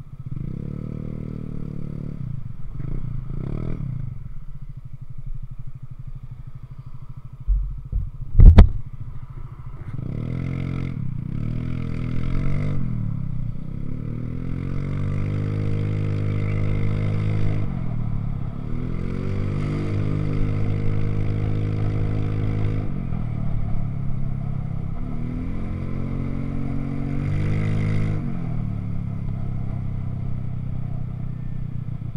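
Motorcycle engine blipped a few times while standing still, then a single sharp thump about eight seconds in. The bike then pulls away and rides on, its engine pitch climbing and dropping back several times through the gears.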